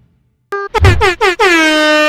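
Air horn sound effect: after half a second of silence, several short blasts in quick succession, then one long held blast.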